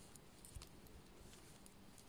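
Near silence with a few faint clicks of metal knitting needles as purl stitches are worked, the clearest about half a second in.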